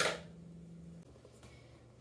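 Near silence: quiet room tone with a faint low steady hum, which drops slightly in pitch about a second in.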